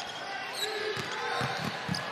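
A basketball bouncing on a hardwood court, several dribbles over a steady murmur of arena ambience.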